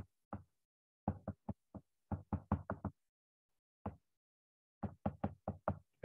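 Stylus tapping on an iPad's glass screen during handwriting: a string of short, sharp taps in irregular clusters, with brief pauses between the words.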